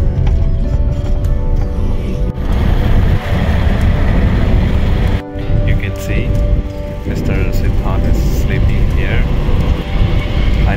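Low, steady road and engine rumble inside a moving car's cabin, with music playing over it; a brief break about five seconds in.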